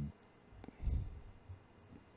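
A quiet pause in a conversation, with a brief, soft, low vocal sound just under a second in and a faint click before it.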